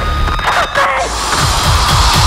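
Horror film trailer soundtrack: dark score over a loud, deep droning rumble, with a voice heard briefly.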